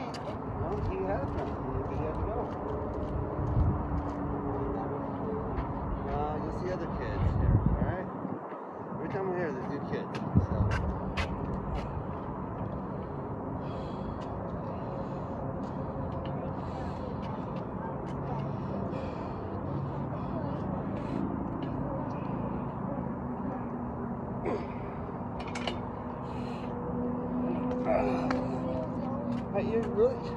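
Indistinct voices of children over a steady outdoor background noise, with scattered light clicks and a few low rumbles in the first third.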